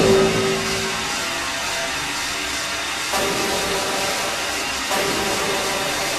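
Beatless breakdown in an industrial hard techno DJ mix: a hissing, noisy drone with no kick drum. A heavy hit with a held low tone fades over the first second, and fresh noisy layers come in about three and five seconds in.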